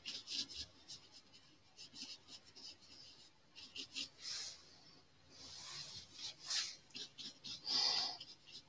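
Oil-painting brush strokes: a bristle brush dabbing and rubbing paint onto canvas in runs of short scratchy strokes, with a few longer swishes and one louder rub near the end.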